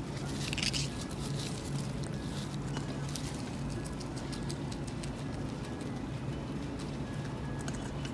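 Two guinea pigs munching fresh salad greens: quick, irregular crisp crunching and leaf rustling, over a low steady hum.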